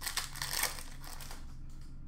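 Glossy trading cards being slid and flicked through by hand: a quick run of papery swipes and ticks in the first second, then softer handling.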